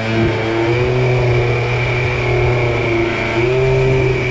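Small motorcycle engine running steadily while riding, its pitch shifting slightly with the throttle and rising a little about three seconds in.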